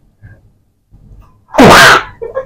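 A woman sneezes once, loudly, near the end, after a quiet stretch.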